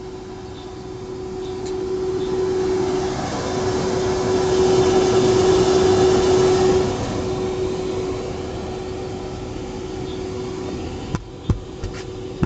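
Electric inflatable blower, a small 220 V centrifugal air-model fan, running steadily and keeping an inflatable tent pumped up: a constant motor hum under a rush of air, loudest for a few seconds in the middle. A few sharp taps near the end.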